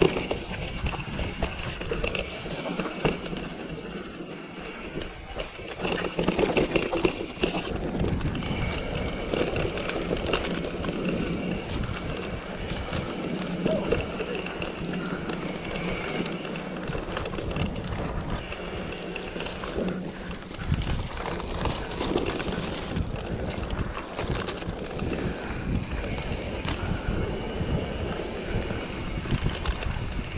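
Mountain bike riding a rough dirt and stone forest trail: tyre rumble with the frame, chain and parts rattling and knocking irregularly over the bumps.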